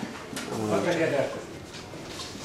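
A man's voice speaking quietly and briefly, much softer than the talk before and after, over the low hum of the room.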